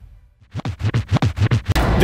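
Music fading out to a brief hush, then a run of quick turntable-style record-scratch strokes, about six a second, starting about half a second in and leading straight into the next song's music near the end.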